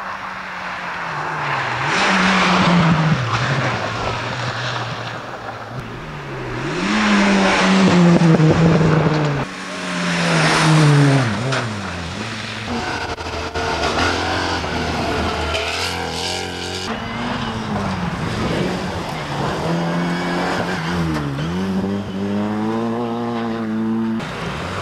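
Rally cars driving a special stage flat out: engines revving up and dropping back at each gear change, several times over. The loudest passes come at about 2, 8 and 11 seconds in.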